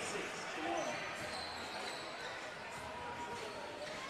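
Live basketball game sound in an indoor hall: a ball being dribbled on the hardwood court over a low, steady murmur of crowd and players' voices.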